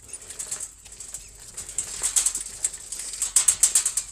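Bicycle ridden over rough, freshly levelled dirt: a rapid, uneven clatter and rattle from the tyres and frame jolting over the bumps, louder in the second half.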